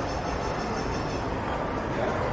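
Steady outdoor ambient noise with a low rumble and no distinct events.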